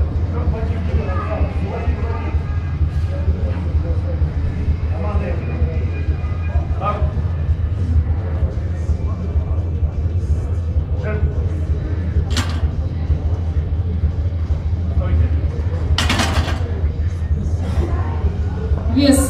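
Hall ambience at a powerlifting meet: a steady low hum with indistinct voices, a few clicks, and one brief loud noisy burst about sixteen seconds in.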